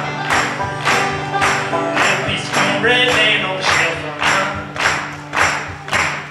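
Live acoustic band: strummed acoustic guitar and banjo, with a steady percussive beat about twice a second.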